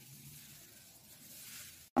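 Faint, steady sizzle of a mooli paratha frying in ghee on a hot iron tawa, cutting off suddenly near the end.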